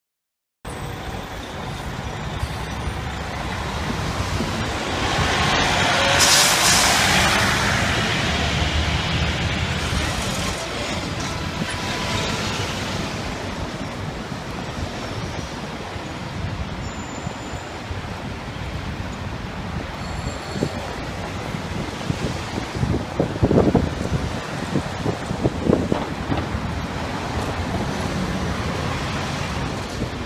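City street traffic starting about half a second in: a city bus, taxis and a fire department ladder truck running and rolling through an intersection, with no siren. A loud air-brake hiss comes about six seconds in.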